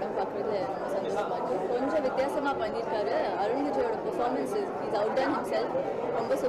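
Speech only: several voices talking over one another in a steady chatter.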